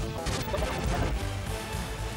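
Music transition sting: a pitched instrumental phrase gives way to a sudden crash-like hit with deep booms. The hit then fades slowly.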